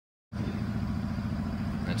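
A steady low mechanical drone that starts abruptly about a third of a second in, after dead silence. A man's voice starts at the very end.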